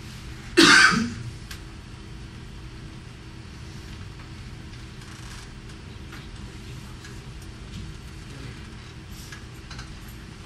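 A single loud cough, about half a second long, just under a second in, followed by quiet room tone with a faint steady hum and a few faint clicks.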